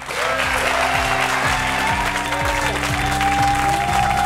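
Studio audience applauding over the talk show's break music, which has steady held notes over a bass line.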